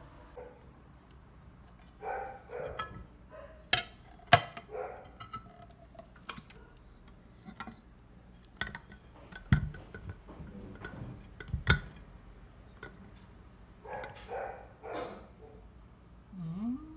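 Aluminium pudding mold and glass cake plate knocking and clinking while the pudding is turned out. There are several sharp clinks, the loudest about four seconds in, and a dull thump near the middle.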